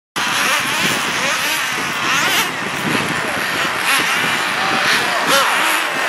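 A pack of radio-controlled nitro sprint cars racing around a small paved oval, their small two-stroke glow engines running at high revs. Several high-pitched engine whines overlap, sliding up and down in pitch as the cars pass.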